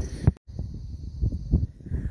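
Wind buffeting a phone microphone, a gusty low rumble, with a brief dropout just under half a second in.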